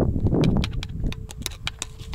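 A screwdriver tip tapping and scraping against a muddy rear disc brake caliper: a quick, uneven run of small sharp clicks. A faint steady hum sits underneath from about a third of the way in.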